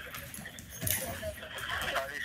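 A faint, muffled voice speaking through a phone's speakerphone, in short syllables from about a second in.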